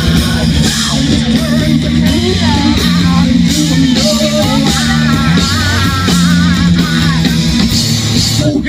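A rock band playing live at full volume: electric guitars, bass and drum kit, with a singer's voice over them.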